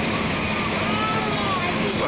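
Sightseeing bus running through town traffic, heard from its open upper deck as a steady rumble and hiss, with a faint voice under it.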